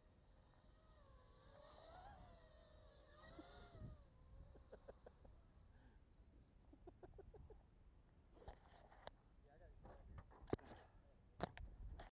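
Near silence, with faint wavering pitched sounds in the first few seconds. Then a scattered series of sharp clicks and knocks near the end as the crashed quadcopter's camera is handled and picked up.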